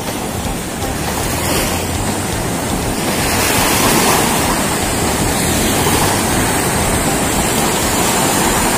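Sea surf washing onto a sandy shore: a steady rushing noise that grows a little fuller about three seconds in.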